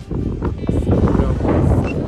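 Wind buffeting the phone's microphone: a heavy, uneven low rumble, over faint background music.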